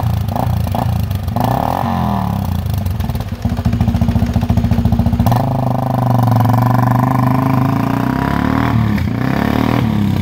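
A sport ATV's engine revved in short blips, then running more steadily. About five seconds in it accelerates hard as the quad pulls away, the engine note climbing and then easing off.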